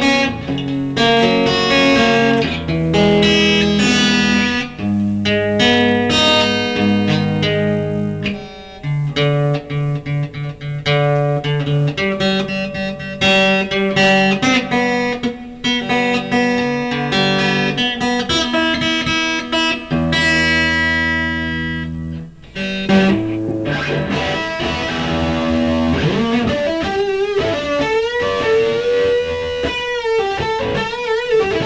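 Electric guitar played through an amplifier: a run of chords and picked riffs, the notes changing every second or so, with a brief dip about 22 seconds in. Over the last few seconds the notes bend and waver in pitch.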